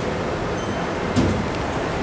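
Schindler 3300 elevator's single-speed center-opening doors sliding shut, with a short thud about a second in as they meet, over a steady background hiss.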